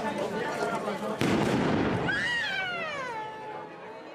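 A loud bang from a festival firecracker about a second in, ringing out briefly over crowd chatter, followed by a high tone that falls in pitch and fades over about a second and a half.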